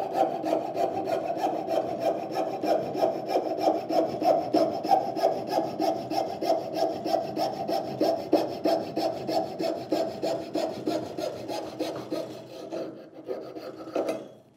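Coping saw cutting through a small block of wood in quick, even back-and-forth strokes, the blade cutting on the push stroke. The sawing fades and stops near the end.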